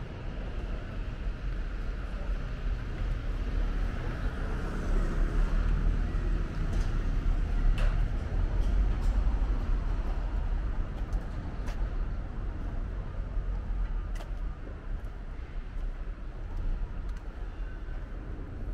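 City street traffic: a steady rumble of passing cars that swells louder about four seconds in and eases off after about nine seconds, with a few faint clicks.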